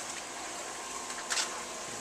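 Steady background hiss with no clear source, and one short burst of noise a little past halfway through.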